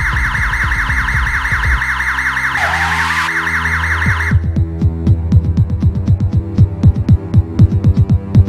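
An electronic siren warbles in quick repeated sweeps over soundtrack music and cuts off suddenly about four seconds in. Dramatic background music takes over, with a low throbbing pulse.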